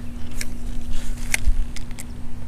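Low rumbling handling noise with a few sharp clicks as a spinning rod and reel are handled on the bank.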